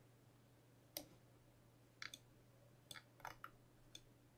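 Faint, sharp clicks of a computer mouse while working in software, scattered irregularly: one about a second in, then a quick cluster in the last two seconds. A low steady electrical hum sits underneath.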